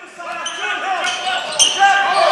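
Basketball game sound fading in from silence: a ball bouncing on the hardwood court amid voices in a large gym, with a sharp bounce about one and a half seconds in.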